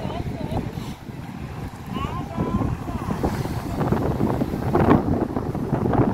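Wind buffeting the microphone as a steady low rumble, with faint voices in the distance.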